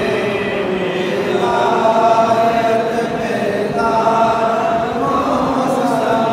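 A group of men chanting a devotional salam (salutation to the Prophet Muhammad) together, in long held melodic phrases.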